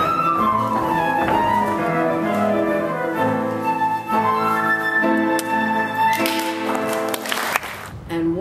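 A small ensemble of flute and bowed strings playing a classical dance tune, with a flowing melody. Near the end a rush of noise rises under the music before it cuts off.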